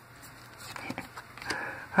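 Pokémon trading cards handled in the hands: faint rustles and a few light clicks as the front card is slid off the stack to show the next one.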